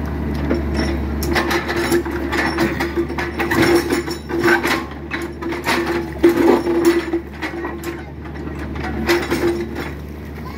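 Mini excavator at work: its engine runs as a steady low drone under a whine that comes and goes, while its steel bucket knocks and scrapes repeatedly against concrete and rubble.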